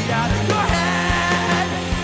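Rock band playing live: electric guitars, bass guitar and a drum kit keeping a steady beat.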